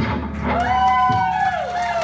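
A rock band's last chord on electric guitars and bass ringing out after the song's closing hit, with a sustained high note that bends downward and fades.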